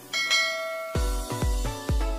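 A bell chime sound effect rings, several clear tones held for most of a second, then an electronic dance track starts about a second in with a steady, deep kick drum.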